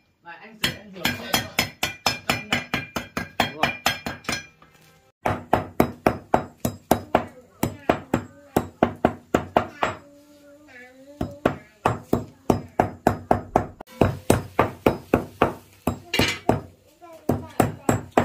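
A hammer pounding hard dried black cardamom seeds on a thick wooden chopping block: rapid, even knocks, about four or five a second, broken by a few short pauses.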